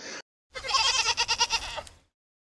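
A goat bleating: one long, quavering call of about a second and a half.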